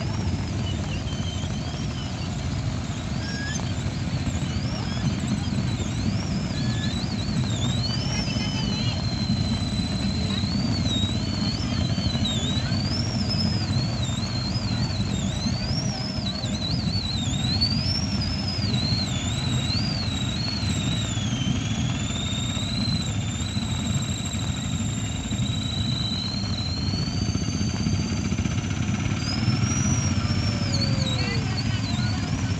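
Motorcycles pulling three-wheeled carts running slowly past on a wet road in rain, a steady low rumble with a hiss over it. A thin high whistling tone wavers up and down through most of it.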